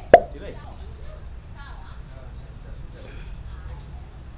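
One sharp smack just after the start, by far the loudest sound, then faint voices in the background.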